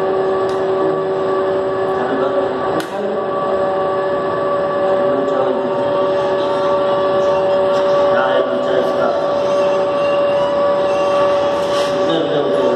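Steady loud machinery drone with a few steady tones, one of which fades out about five seconds in, and a few sharp clicks.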